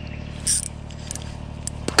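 Spinning reel working as a hooked chub is played on light line, with a short scratchy burst about half a second in and a few light clicks near the end.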